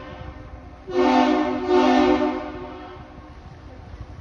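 Great Lakes freighter's horn: the end of one blast fades out, then a new loud blast sounds about a second in, swells again, and dies away with echo over the next second, over a low rumble.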